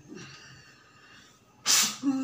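A person's single short, forceful burst of breath near the end, sharp and loud.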